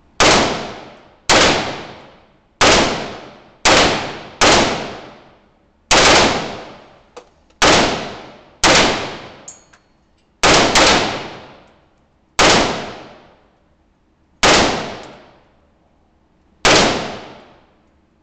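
WASR AK-47 rifle in 7.62×39mm fired in single shots, about thirteen at uneven intervals of one to two seconds, two of them almost together about ten seconds in. Each shot rings on in a long echo off the enclosed concrete range.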